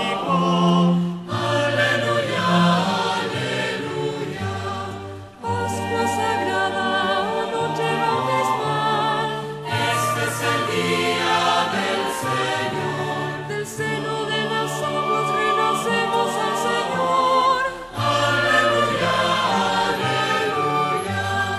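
Choir singing a Taizé chant, with short repeated phrases about four seconds long, each ending in a brief breath before the next.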